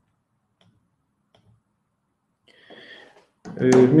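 Near silence with a couple of faint clicks, then a short in-breath, after which a man starts speaking near the end.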